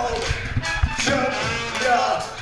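A live ska-metal band playing loud, with drums hitting in a steady beat under pitched brass lines from a trombone and trumpet horn section.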